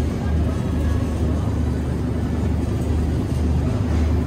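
Steady low rumbling hum of supermarket background noise, with no distinct events.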